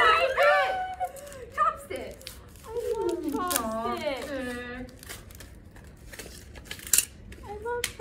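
Young people laughing and calling out in a small room, with one drawn-out voice a few seconds in and a few sharp clicks from a gift being handled.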